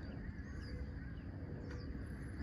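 Quiet outdoor ambience: a low, steady rumble with a few faint, short bird chirps.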